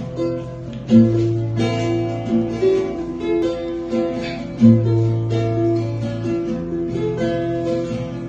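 Acoustic guitar and a smaller stringed instrument, likely a ukulele, strummed together in steady chords. Deep bass notes ring out about a second in and again just before five seconds.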